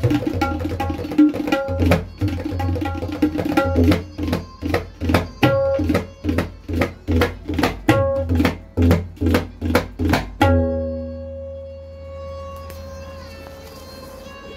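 Freshly made tabla tuned to D played by hand, quick strokes with deep bass under them, easing to about two strokes a second in the middle. About ten and a half seconds in, a last stroke rings on as a steady tone that slowly fades.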